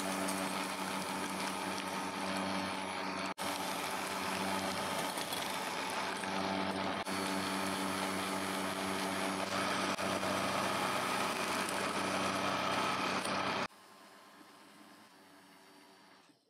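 Bosch electric hand mixer running steadily at speed, its wire beaters whipping egg whites and sugar in a glass bowl into meringue. The motor sound cuts off about three-quarters of the way through.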